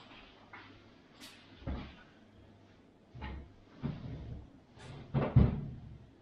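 A cupboard door being opened and shut, heard as a few separate dull knocks, the loudest pair close together a little after five seconds in.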